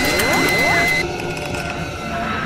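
Logo-intro sound effects: a run of mechanical clicks with several rising sweeps and a held high tone that cuts off about a second in.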